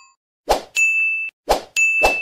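Animated-graphic sound effects. Two sharp hits about a second apart, each followed by a high, steady bell-like ding lasting about half a second.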